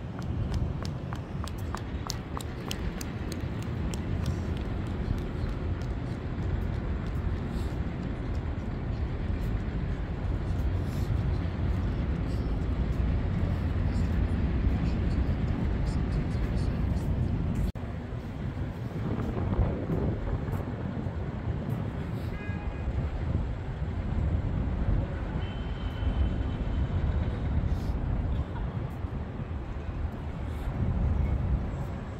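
Outdoor city ambience: a steady low rumble of road traffic, with footsteps on paving and faint voices of passers-by.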